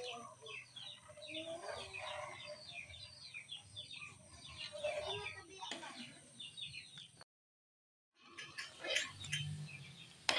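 Birds chirping in a rapid run of short, high, falling chirps, with some lower calls beneath. The sound drops out completely for about a second near the end, then chirping and a few sharp clicks come back.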